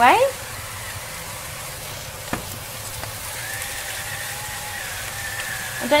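Small diced chicken pieces sizzling steadily in olive oil in a hot frying pan as the underside sears, with a single sharp click a little over two seconds in.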